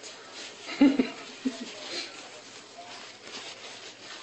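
Short, quiet voice sounds: a brief exclamation or chuckle about a second in, then a couple of smaller murmurs, over a low steady room hum.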